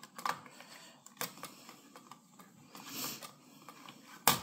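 A few light plastic clicks and a soft rustle: a paper label roll being seated by hand in the open roll compartment of a Phomemo M110 thermal label printer. The clicks come in the first second or so, the rustle near the end.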